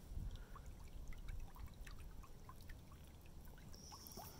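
Shallow creek water trickling faintly over pebbles, with small scattered bubbling plinks.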